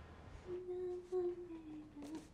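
A woman humming softly to soothe a baby: one long, low held note that starts about half a second in and sinks slightly in pitch.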